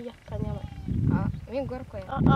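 Two young girls talking in Fulfulde, high-pitched voices in short phrases.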